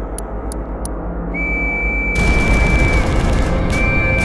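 Two long blasts of a trench whistle at one steady high pitch, signalling the attack over the top. The first starts just over a second in and the second just before the end. From about two seconds in, a loud rumble of explosions runs under the whistle over a low music drone, and a few watch ticks end just after the start.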